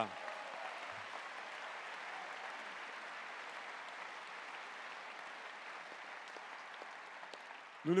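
Audience applauding steadily, slowly dying down over several seconds.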